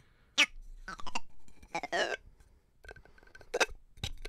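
A plastic groan tube being tipped over and back, giving a few short groaning, animal-like calls, one sliding down in pitch midway.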